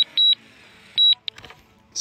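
Short high-pitched electronic beeps from the drone's remote controller or flight app, three in quick succession with a gap of about a second before the last, sounding while the DJI Mavic Mini auto-lands.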